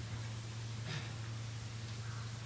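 Steady low electrical hum under a hiss, with one brief faint sound about a second in.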